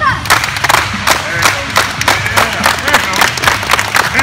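A group of kids and their coach clapping fast and hard in a huddle cheer, several claps a second, with shouting voices mixed in.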